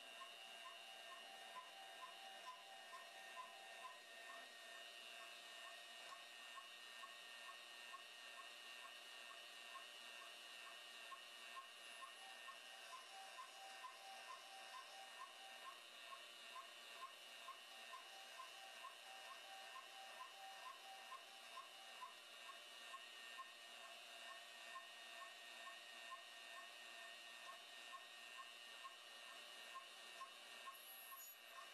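Metal-cutting bandsaw running very faintly while it cuts steel bar stock: a thin steady whine with a light tick about twice a second.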